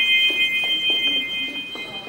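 A high, held bell-like chime, several steady tones sounding together and thinning out near the end, from the film's added soundtrack music.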